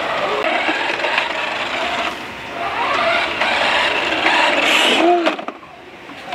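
A small electric drive motor and gearbox of a remote-control toy Audi Q7 whirring as the car runs across a tiled floor, its pitch rising and falling with the throttle. The whirring stops suddenly about five seconds in.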